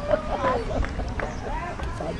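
Several people talking over one another with a laugh, adults' and children's voices mixed.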